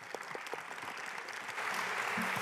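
Audience applauding. It begins with a few scattered claps and swells into steady applause.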